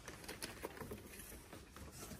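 Faint scattered light clicks and taps of plastic-packaged goods settling on a shop display rack, over low shop background noise.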